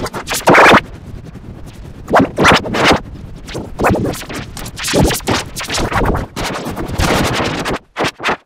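Loud, digitally warped and distorted audio from an effects edit, chopped into irregular scratch-like stutters and bursts. The loudest burst comes about half a second in, and the sound cuts out briefly near the end.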